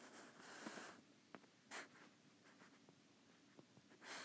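Faint scratching of a stylus writing on a tablet, two short strokes in the first two seconds, then a few light taps.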